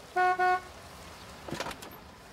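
Car horn of a stretch limousine tooting twice in quick succession as it pulls up, the short, loud honks of a driver announcing arrival for a pickup. A brief clatter follows about a second and a half in.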